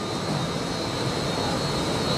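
Steady rush of industrial ventilation and air-handling equipment, with a thin high-pitched whine held over it.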